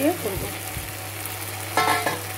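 Spice paste sizzling in hot oil in a metal karahi, stirred with a metal spatula, over a steady low hum.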